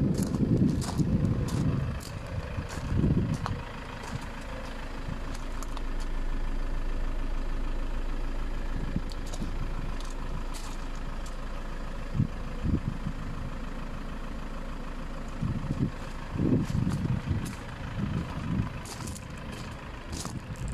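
Fiat Ducato's 3.0-litre diesel engine idling steadily. Gusts of wind buffet the microphone with low rumbles near the start and again near the end.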